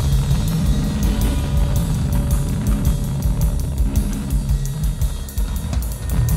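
Loud, dense improvised rock: a drum kit played fast, with rapid cymbal strokes, over heavy, sustained low bass and electric guitar.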